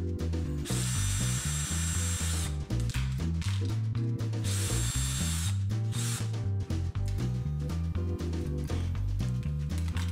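Cordless drill with a nut-driver bit running in bursts of a second or two, loosening worm-drive hose clamps off a glued stave cylinder. Background music plays underneath.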